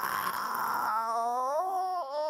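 A rock singer's high-pitched vocal scream: a raspy screech that turns about a second in into a clear wailing note, sliding upward and then held with a slight waver.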